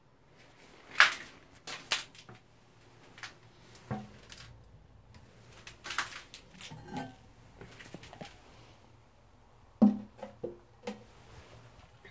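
Clinks and knocks of the ceramic lid of a Shires Denbigh low-level toilet cistern being lifted off and set down. There is a sharp knock about a second in, scattered clicks after it, and a cluster of knocks near the end.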